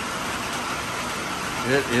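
Steady rain falling, an even hiss, with a man's voice starting near the end.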